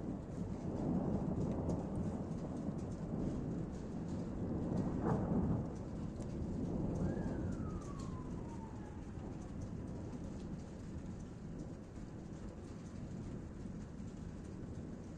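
Thunder rumbling: a low roll that swells twice and cuts back sharply about six seconds in, then goes on as a softer rumble. Two falling whistle-like tones pass over it, a quick one about five seconds in and a longer, slower one starting about seven seconds in.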